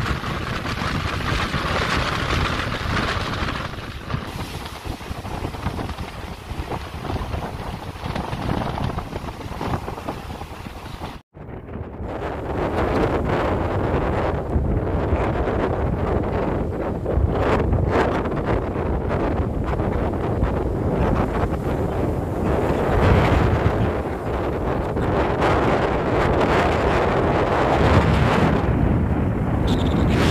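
Cyclone-driven surf churning and breaking against a rock seawall, with strong wind buffeting the microphone. The sound cuts out for an instant about eleven seconds in and comes back louder and heavier.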